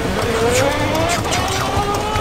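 Razor electric ride-on quad's motor whining as it pulls away. The pitch rises over about the first second, then holds steady.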